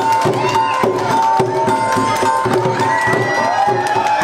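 Khmer chhaiyam dance music played live: drums beating a quick, steady rhythm under a held high melody line, with crowd noise.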